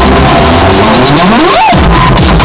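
Very loud electronic dance music from a live DJ set over a festival sound system. In the second half a synth sweep rises steeply in pitch while the bass cuts out for a moment, then the bass kicks back in near the end.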